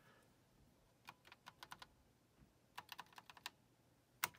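Computer keyboard keys tapped in two quick runs of about six presses each, roughly a second apart, as arrow keys step a menu selection along.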